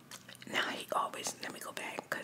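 A woman whispering close to the microphone, with sharp hissy consonants.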